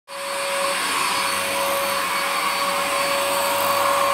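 Cordless stick vacuum cleaner running steadily over carpet, a rush of air with its motor whine held at one pitch.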